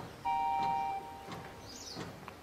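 Background music: a sustained two-note keyboard chord holds for under a second and then fades away.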